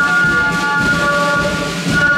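Melody flute band playing: the flutes hold a long, sustained chord over steady drum beats.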